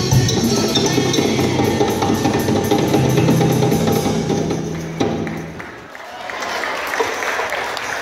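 A live school band, with djembe hand drums, drum kit, guitar and voices, plays the final bars of its African-style song. It holds a last low note that stops about five and a half seconds in.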